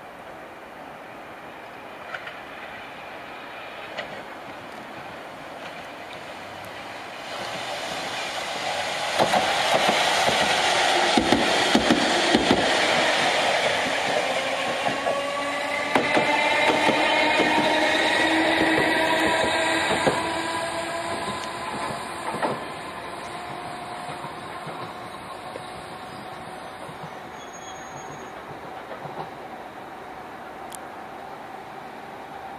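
Chikuho Electric Railway 3000 series articulated car passing at close range: its running noise builds over several seconds, is loudest for about twelve seconds with wheels clicking over rail joints and a motor whine slowly rising in pitch, then fades away.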